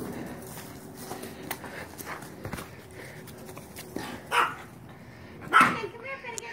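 A dog barking twice, two short barks about a second apart in the second half, over small handling clicks.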